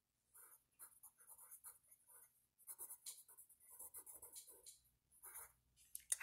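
Faint pencil writing on paper: a run of short, irregular scratchy strokes as words and a number are written, with brief pauses between them.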